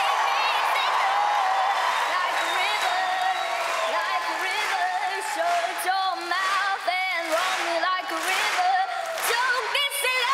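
A young girl singing unaccompanied with no backing track, holding a long note. From about halfway through, an audience breaks into cheering, whooping and applause.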